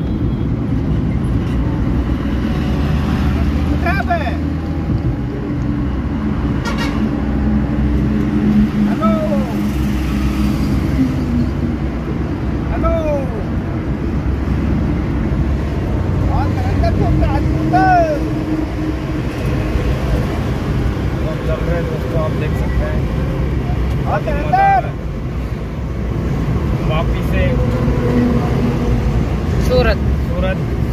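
Steady engine drone with tyre and road noise inside the cabin of a Maruti Suzuki Eeco van cruising on a highway, with voices talking over it now and then.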